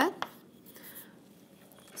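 Chalk scratching faintly on a blackboard as a short formula is finished, in a quiet room.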